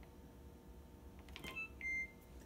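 GE Adora dishwasher's electronic control panel beeping as it powers back on after a two-button hold reset, its control board coming back to life after losing all lights. After a low room hum, a faint click and a short high beep come near the end, followed by a louder, longer beep.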